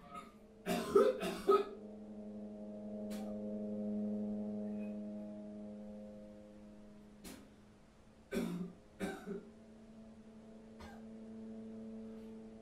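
A sustained droning score of several held, bell-like tones, swelling to its loudest around four seconds in. Over it a young man leaning over a sink coughs and gags in short harsh bursts: two loud ones about a second in, a faint one near three seconds, and a cluster of three about eight to nine seconds in.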